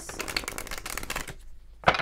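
A deck of tarot cards being shuffled by hand: a rapid patter of cards flicking against each other for about a second and a half, a brief lull, then a sharp snap and another quick run of flicks near the end.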